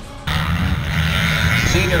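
Music cuts off abruptly, giving way to several off-road motorcycle engines idling together on a race start line, with a public-address announcer's voice starting near the end.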